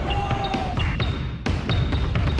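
A basketball dribbled and bouncing on a court floor, a few sharp bounces, over background music with a steady low beat.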